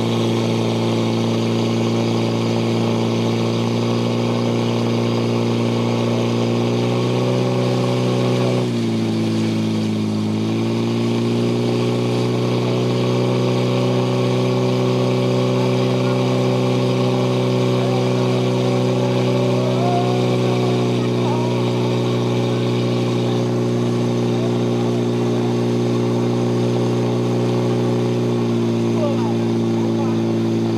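Portable fire pump engine running at high revs, a steady drone while it drives water through the attack hoses to the nozzles. Its pitch dips briefly about nine seconds in and recovers, and drops slightly near the end.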